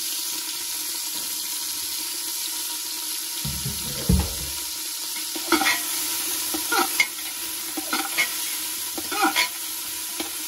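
Cauliflower florets sizzling steadily in an aluminium pressure cooker. After a dull thump a little before halfway, a metal spoon scrapes and knocks against the pot in several short strokes as the florets are stirred.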